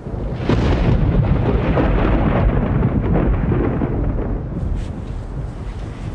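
A loud roll of thunder that breaks out suddenly and rumbles on, slowly fading.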